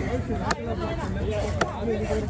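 Heavy fish-cutting knife chopping through a diamond trevally into a wooden chopping block: two sharp chops about a second apart.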